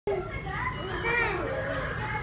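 Toddlers playing and vocalizing, with a child's high voice rising and falling about a second in.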